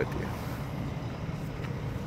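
Steady low rumble of a semi-truck's diesel engine idling close by.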